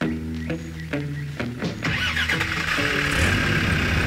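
Background music with low stepped notes, joined about halfway through by a vehicle engine starting and revving that builds toward the end, with a rushing noise over it: a Land Rover Defender's engine.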